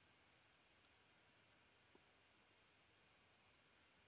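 Near silence: room tone with a few faint clicks, two small pairs about a second in and near the end.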